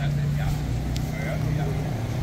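A motor vehicle engine running steadily with a low hum, with faint voices of people around.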